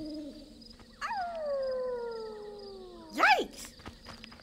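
A cartoon werewolf howl: one long cry that starts about a second in, jumps up and then slides slowly down in pitch. Near the end a short, loud yelp rises and falls.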